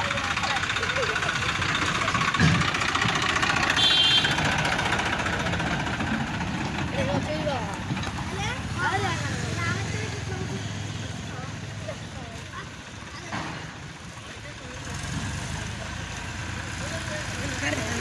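Farm tractor's diesel engine running as it pulls a trailer, louder in the first few seconds and growing fainter as it drives away, with onlookers' voices calling over it.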